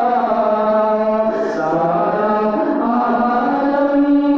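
Two men singing a naat, Islamic devotional verse in praise of the Prophet, into handheld microphones, holding long notes that bend slowly up and down.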